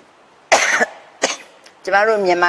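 A woman coughing: one strong cough about half a second in, then a shorter one a little later.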